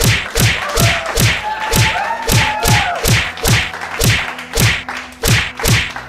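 A rapid series of dubbed fight-scene punch sound effects, each a deep thud with a sharp whack on top, about a dozen blows at roughly two a second, for a staged beating.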